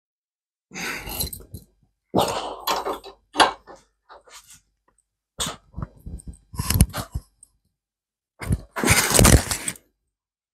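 A homemade screw-type rivet press being wound down under load with a breaker bar to squeeze a rivet. It gives about five irregular bursts of creaking and clunking, the loudest near the end.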